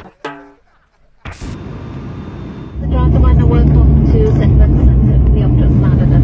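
Music cuts off, and after about a second of near silence, outdoor noise sets in. From about three seconds in, a loud, steady low rumble runs under indistinct voices.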